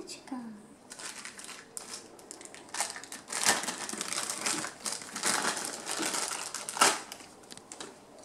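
Bubble wrap and clear plastic packaging crinkling in the hands as small plastic toy pieces are unwrapped, in irregular bursts with the loudest crackle about seven seconds in.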